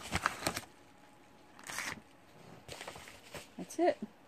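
Paper and packaging rustling and crinkling in short bursts as a padded paper mailer is handled and its contents are pulled out, with a cluster of crinkles at the start and single rustles just before two seconds and around three seconds.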